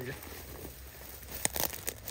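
Dry brush and twigs crackling as they are handled or pushed aside, with a cluster of sharp snaps and crackles in the second half.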